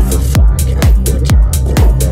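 Psytrance track playing: a four-on-the-floor kick drum, about two kicks a second, with a rolling bassline filling the gaps between kicks and crisp hi-hats on top.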